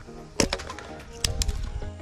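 Hatchet splitting kindling off a log: a sharp strike about half a second in, then two more close together just past the middle, over background music.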